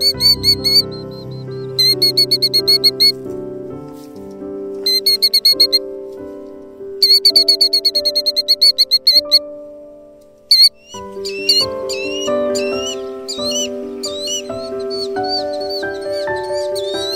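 Background music of steady held notes, with a killdeer's high, rapid trilled calls over it in several runs of one to two seconds, then separate rising-and-falling call notes in the second half. This is the alarm calling of a killdeer guarding its nest and eggs during a broken-wing distraction display.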